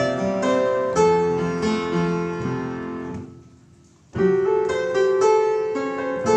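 Upright piano being played, a melody over chords with each note struck and then dying away. About three seconds in the playing stops and the sound fades almost to nothing for about a second, then the playing starts again.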